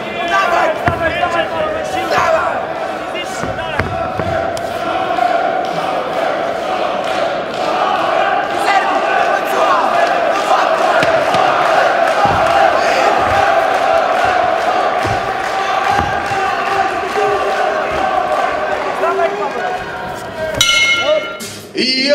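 Fight crowd shouting and cheering in a hall, swelling into a sustained roar in the middle, with scattered thuds of blows and bodies against the cage. Music comes in near the end.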